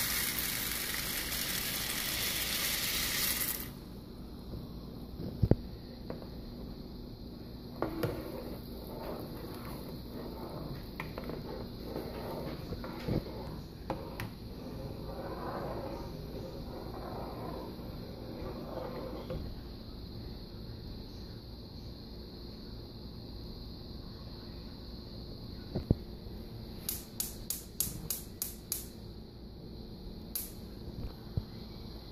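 Small dry pasta poured into a pot of boiling water, a loud rush that stops suddenly about four seconds in, then a utensil stirring the noodles in the metal pot with scattered knocks. Near the end, a GE gas range's spark igniter clicks rapidly, about three clicks a second, as a burner is lit.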